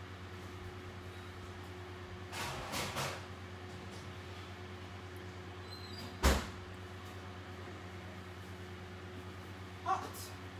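Steady low hum in a kitchen, with a few short scraping sounds between two and three seconds in. About six seconds in comes one loud clunk, as of the oven door being opened to take out the baked cookies.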